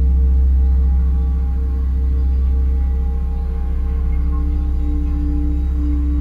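Several metal singing bowls ringing together in a sustained, pulsing drone over a deep hum. Another bowl tone swells in about four seconds in.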